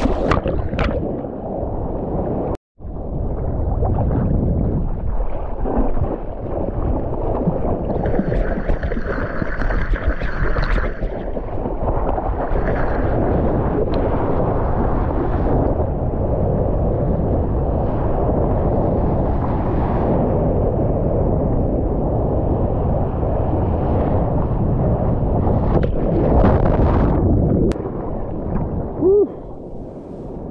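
Close-up rush and splash of water from a surfboard riding a wave, heard on an action camera. The sound cuts out briefly between two and three seconds in and falls away near the end.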